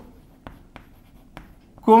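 Chalk writing on a blackboard: about four short, faint taps and strokes. A man's voice starts just before the end.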